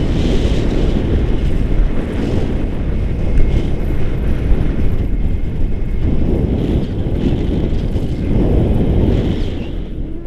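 Wind from a paraglider flight rushing over the camera microphone: a loud, gusting low rumble that swells and dips irregularly and eases a little near the end.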